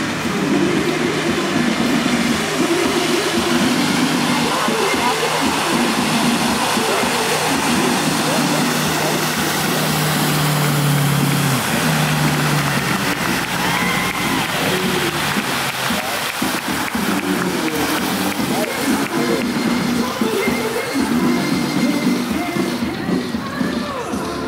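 Tow boat's engine running at a steady pitch, easing down in pitch about eleven seconds in and fading out a second or so later, under a wash of water noise and the voices of onlookers.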